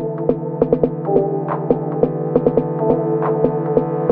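Instrumental electronic beat: a steady low bass note and a held synth chord, with crisp percussion hits falling several times a second.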